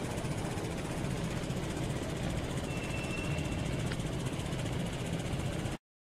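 Street traffic ambience: a steady low rumble of vehicle engines, with a brief thin high tone a little after halfway, and the sound cutting off abruptly just before the end.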